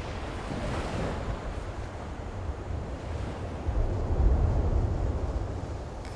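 Ocean surf: waves breaking and washing in, with wind, the low rush swelling louder a little past the middle.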